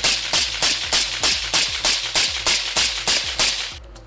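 A fast, even series of sharp cracks, about four a second, stopping shortly before the end.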